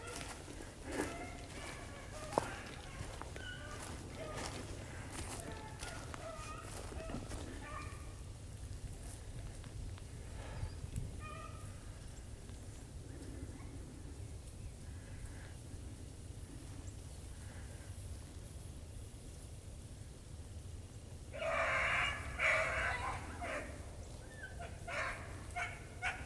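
Beagles baying in the distance while running a rabbit: faint scattered bays, then a louder run of several bays a few seconds before the end.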